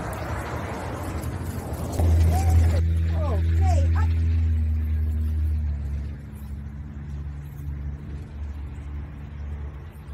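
A motor vehicle engine running close by: a steady low hum with a few held tones, loudest from about two to six seconds in, then lower.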